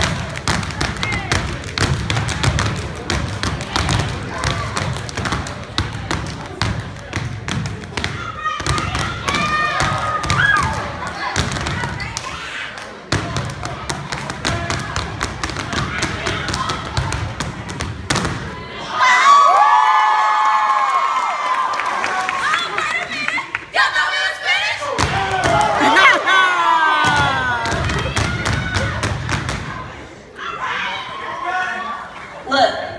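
A step team stomping their boots on a stage and clapping in fast rhythm, a dense run of sharp thuds and claps. About two-thirds of the way in the stomping mostly stops and loud shouting and cheering voices take over, with a short return of stomps near the end.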